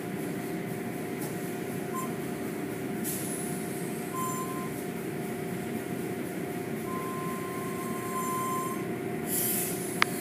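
Automatic tunnel car wash machinery running with a steady hum, heard from inside a car, with short thin squealing tones a few times. A hissing rush of spray comes in about three seconds in, and a louder burst of spray hits near the end.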